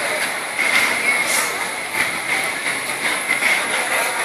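Crowd noise around an amateur boxing bout: a steady din of many voices, with a few short sharp sounds standing out.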